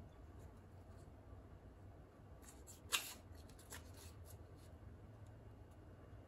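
Faint handling noise from a folding prop caber as its blades are swung open: a few light clicks and rubs, the loudest click about three seconds in.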